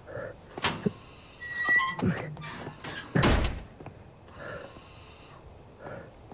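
A metal door clunking and squeaking open, with a heavy thunk a little after three seconds in, followed by heavy breathing through a firefighter's breathing-apparatus mask.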